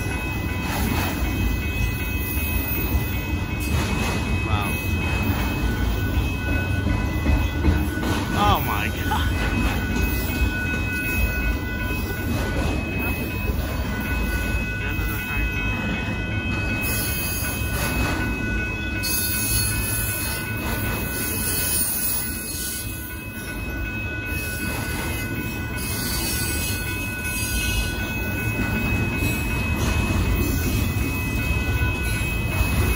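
Freight train of autorack cars rolling slowly past, a continuous low rumble with thin, steady high-pitched tones ringing over it.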